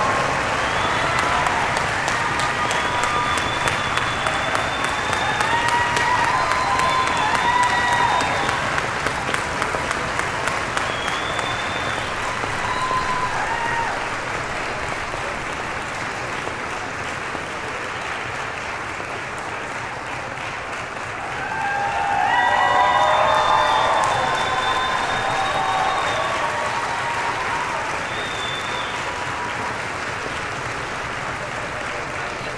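Concert audience applauding, with shouts and cheers over the clapping. It eases off through the middle, then swells again with more cheering a little past two-thirds of the way through.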